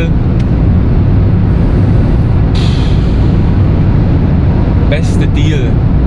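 Steady low road and engine drone inside a car's cabin at highway speed, with a brief rushing hiss about two and a half seconds in.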